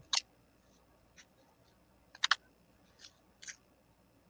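Paper being handled and creased as it is folded: a few short, quiet, scratchy rustles, the loudest a quick pair a little after two seconds in.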